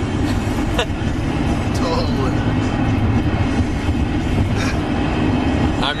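Steady low rumble of road and engine noise inside a moving vehicle's cabin, with faint voices now and then.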